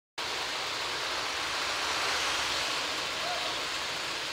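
Steady outdoor city-street noise, an even hiss-like wash of distant traffic and general street sound with no distinct events.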